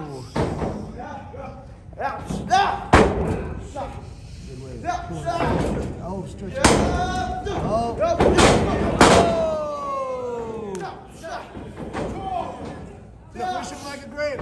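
Wrestlers' bodies slamming onto a pro wrestling ring's canvas: several loud, sharp impacts, two of them close together about two thirds of the way in, with voices shouting in between.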